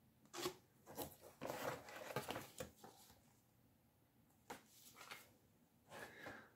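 Faint rustling of paper booklets and cardboard being handled, in several short bursts with a quiet pause in the middle.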